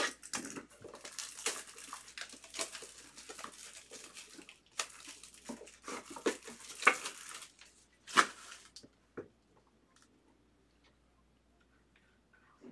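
Wrapper on a trading-card box being slit and torn open, then cardboard scraping and rustling as the white inner box is slid out and its lid lifted. The rustling stops with one sharper scrape just past eight seconds, leaving only a few faint taps.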